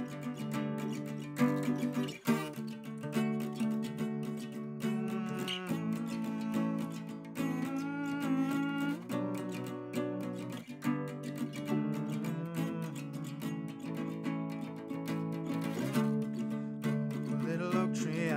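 Solo acoustic guitar playing an instrumental interlude, picked and strummed notes ringing on without any voice.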